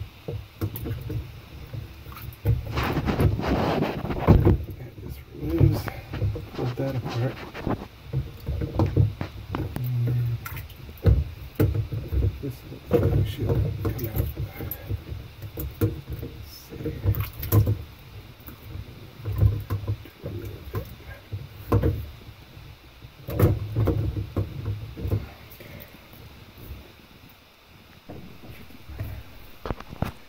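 Plastic lower spray arm of a GE dishwasher being gripped and worked by hand inside the tub: irregular plastic clicks and knocks over rumbling handling noise.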